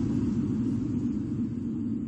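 Low rumble from an animated logo sting's sound effect, slowly fading out after its whoosh.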